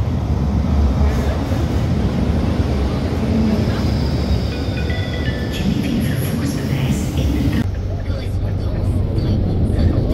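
Brussels tram rumbling loudly and steadily as it comes into an underground platform, with a faint high whine midway. About three-quarters through, the sound changes to the duller, lower running heard from inside the moving tram.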